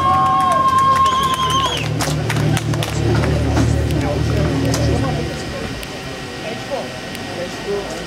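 Lada VFTS rally car's four-cylinder engine idling, then shut off about five seconds in. Music and crowd chatter run over it.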